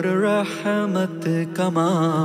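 Background music: a singer with long held, wavering notes in a devotional-sounding song in Urdu.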